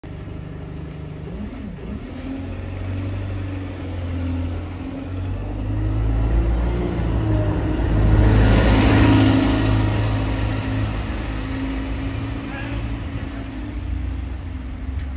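Alexander Dennis Enviro200 single-deck diesel bus passing close by: a steady engine hum that grows louder, is loudest with engine and tyre noise about eight to ten seconds in as the bus goes past, then fades as it moves away down the street.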